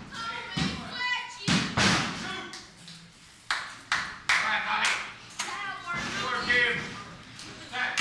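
Thuds on a wrestling ring mat, several sharp hits in the first half, among them the referee's hand slapping the mat for a pin count. Crowd voices shout throughout.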